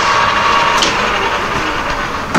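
Metal lathe running: a steady mechanical whir with a faint high whine from the spindle, turning a scrap-gear blank after a chamfer cut.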